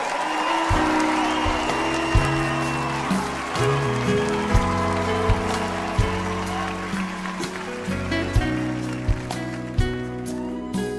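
Live band opening a slow ballad with sustained low notes and soft, evenly spaced percussive hits, over audience applause and cheering that fade away in the first few seconds.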